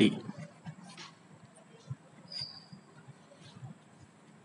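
Pen writing on paper: faint scratching strokes and small taps, with one short, high squeak about two seconds in.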